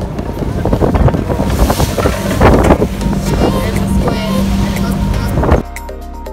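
Wind buffeting the microphone on the deck of a fishing boat at sea, over the steady low drone of the boat's engine and water noise. It cuts off suddenly near the end, giving way to music.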